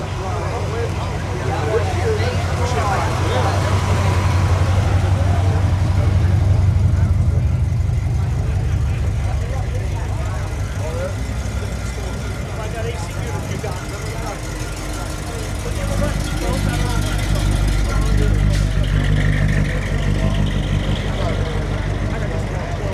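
Classic car engines running at low speed as the cars roll slowly past one after another. The engine note swells as one passes close a few seconds in, and again as another passes late on, over a background of crowd chatter.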